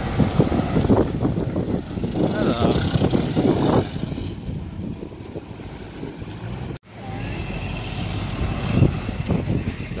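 Classic cars driving slowly past on a street with their engines running, mixed with voices. The sound cuts off abruptly about seven seconds in and picks up again with a steady low rumble.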